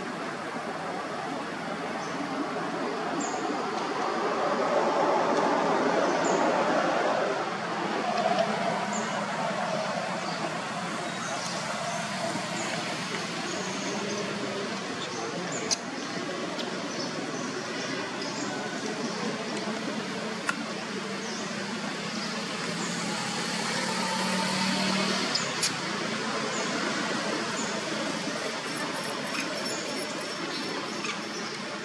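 Steady outdoor background noise that swells over the first several seconds and again near the end, with faint high chirps scattered through and two sharp clicks in the middle.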